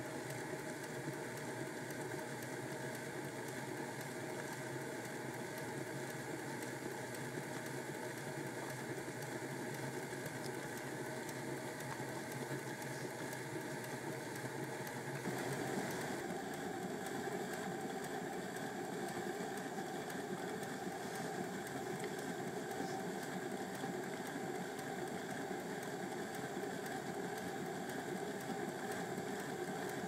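OO gauge model steam locomotive, a Bachmann GWR 4575 Class Prairie tank, running steadily forward: the small electric motor and gears whir, with a faint clicking from its loosely fitted vacuum pump, which wobbles on its etched brass shaft. The sound gets a little louder about halfway through.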